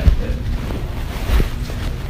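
Shopping cart rolling over a hard store floor: a low, steady rumble with a sharp knock at the start and a dull thump about halfway through.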